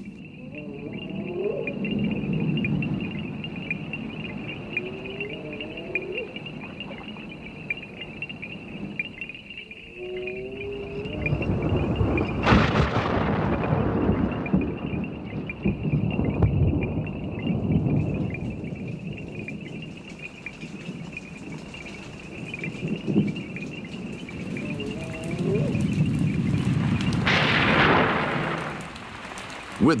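Thunder, two claps: one about twelve seconds in and another near the end, each starting sharply and rolling on for several seconds. A steady high trilling chorus runs underneath.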